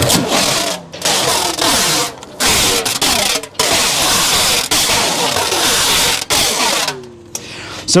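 Firewood bundling machine wrapping a bundle of split wood in stretch film: the wrap ring turns and plastic film pulls off the roll as a loud, steady, noisy hiss, which stops about a second before the end.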